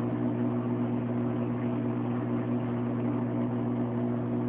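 Steady low electric hum from aquarium equipment running beside the tank, unchanging in pitch and level.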